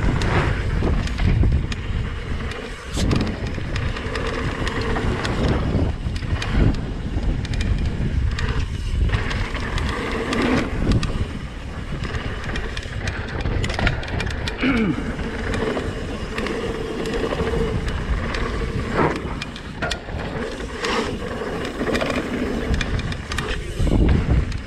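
Mountain bike descending a dry dirt trail: steady wind rush on the action-camera microphone over tyre noise on dirt, with frequent rattles and knocks from the bike over bumps.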